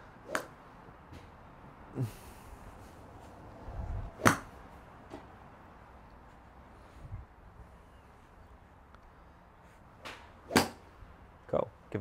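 Practice swings with a golf driver over a tee peg on a range mat: each swing goes with a quick whoosh and a sharp click as the clubhead clips the tee peg. Three clicks, about a second in, about four seconds in (the loudest) and near the end.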